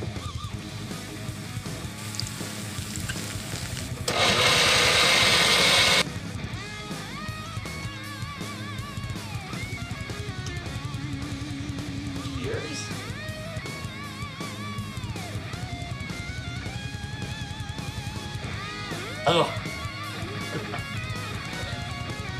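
Guitar background music, with a countertop blender running for about two seconds, about four seconds in, grinding tortilla chips in soda; it starts and stops abruptly.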